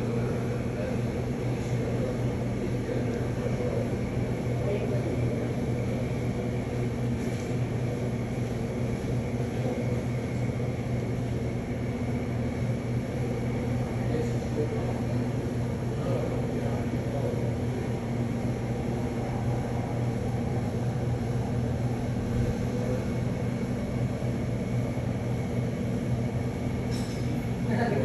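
Light helicopter hovering overhead, its rotor and turbine engine running steadily as it lifts a long cable-slung aerial saw off the ground.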